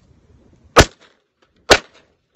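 Two shots from a 1911 pistol, one about a second in and the second just under a second later, each a single sharp, very loud crack.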